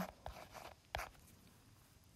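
Faint taps and short scratches of a stylus writing on a tablet's glass screen, a few quick strokes in the first second as handwritten numerals are drawn.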